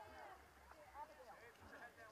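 Faint, overlapping voices of a crowd of racers and spectators talking and calling out at a distance, with no single clear speaker.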